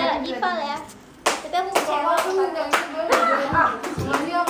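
Hand claps, about two a second, starting just over a second in after a short lull, with voices sounding between the claps.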